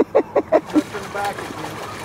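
A man's short bursts of laughter, four quick ones at the start, over the steady wash of river water.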